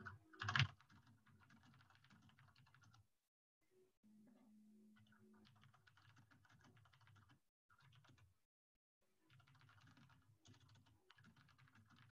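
Faint, rapid typing on a computer keyboard heard over a video-call microphone, with one louder knock about half a second in. The sound drops to dead silence a few times in between.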